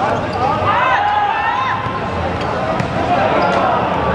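Football being kicked and bouncing on a hard court, with players' voices calling out across the pitch.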